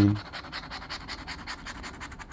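Rapid, even scratching of the coating off a paper scratch-off lottery ticket, many short strokes a second.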